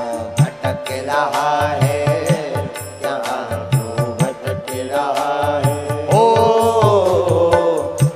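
Hindi devotional bhajan: a male singer's long, wavering held notes over a steady percussion beat, with audience hand-clapping along; one long sustained note near the end.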